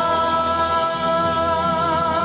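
Live song with a male singer holding one long high note with vibrato over the band's accompaniment.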